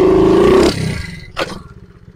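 A 70cc pit bike's engine is revved hard for under a second to pop a clutchless wheelie in second gear, then falls back, with a short second blip about a second and a half in.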